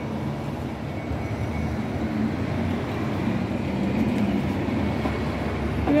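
City street traffic at a bus stop: a steady rumble with a faint electric hum from an articulated electric bus pulling past, swelling slightly midway.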